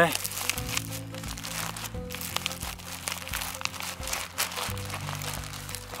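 Clear plastic bag and dehydrated-meal pouch crinkling in the hands as the pouch is pushed into the bag, in many short crackles, over background music with steady low notes.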